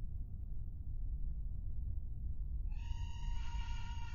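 Low droning rumble of a horror soundtrack, and about three-quarters of the way through a high, strained, wavering cry starts and is held, sounding like someone being strangled.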